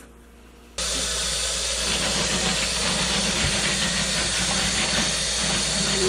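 Tap water running steadily over freshly boiled peanuts as they are rinsed in cold water, starting abruptly about a second in.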